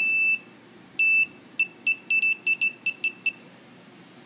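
The small alarm buzzer of a laser-beam tripwire beeps each time the beam to the photo sensor is broken. There is a high, steady beep at the start and another about a second in, then a quick run of about ten short chirps that stops a little past three seconds in.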